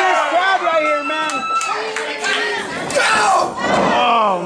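Crowd of wrestling fans shouting and yelling over one another, many voices at once.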